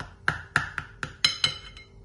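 Steel knife clinking against the bottom of a glass baking dish while cutting baked kafta into pieces: a quick run of about seven sharp clinks.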